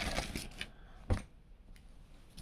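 Rustling of a t-shirt and its plastic packaging as the shirt is pulled out and unfolded by hand, with one sharper rustle about a second in and fainter rustles after it.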